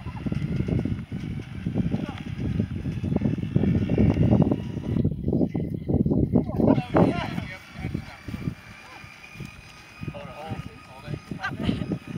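Wind noise on the microphone, strong and gusty for about the first seven seconds and then dying down, with indistinct voices calling out.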